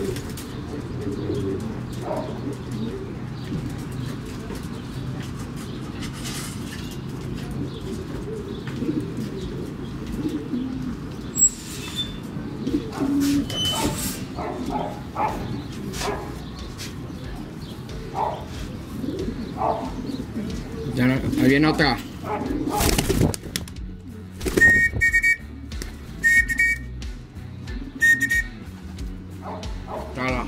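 Domestic racing pigeons cooing steadily around the loft as the birds return. In the second half come a few knocks and rustles, then several short high chirps about a second and a half apart.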